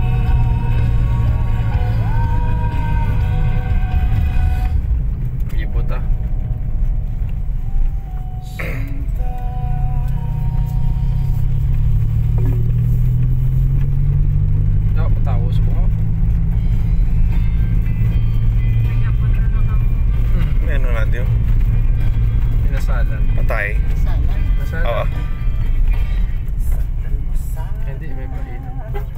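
A car driving, heard from inside the cabin: steady engine and road rumble with music playing over it.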